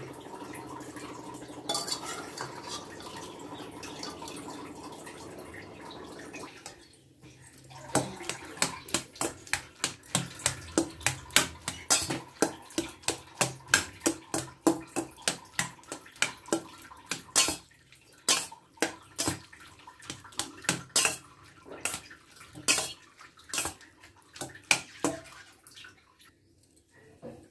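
Steel spatula mashing soft boiled bottle gourd pieces in a stainless steel bowl, knocking against the bowl about twice a second. The knocking starts about eight seconds in, after a steady hum.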